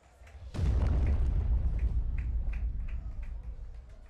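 Broadcast transition sound effect leading into a commercial break: a sudden deep boom with a brief swoosh about half a second in, rumbling and dying away over about three seconds.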